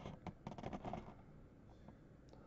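Faint rustling and light taps of hands handling a cardboard trading-card blaster box, with a few small clicks in the first second before it quietens.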